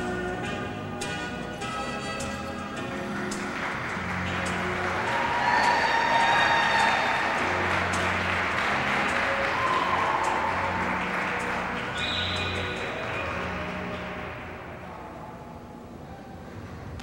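Foxtrot dance music played over the rink's sound system, with audience applause rising a few seconds in, peaking, then fading out near the end.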